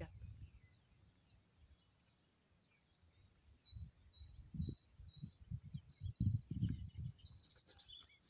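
Birds chirping faintly in the background. In the second half there is low buffeting on the microphone.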